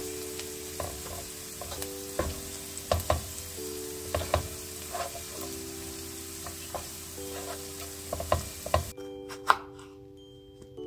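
Food sizzling in a hot frying pan while a utensil stirs it, with irregular knocks and scrapes against the pan. The sizzle cuts off suddenly about nine seconds in, leaving a couple of clinks.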